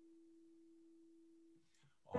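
Near silence but for one faint held keyboard note, a pure steady tone that stops about one and a half seconds in.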